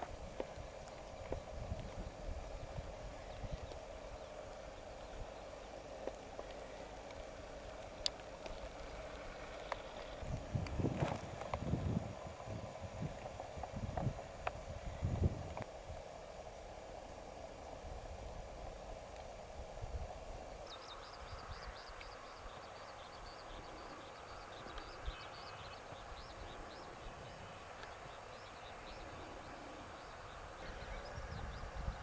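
Open-air field ambience: a low rumble with scattered knocks, which grow louder and more frequent between about ten and sixteen seconds in. From about two-thirds of the way through, a rapid, high-pitched chirping repeats steadily.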